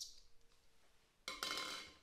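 A spoon clinks once against a small glass cup, then scrapes against it for about a second near the end as diced vegetables are spooned out into a glass mixing bowl.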